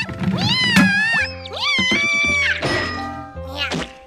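Cartoon background music with a kitten character's high, squeaky cries that glide up and down, and a thump about a second in.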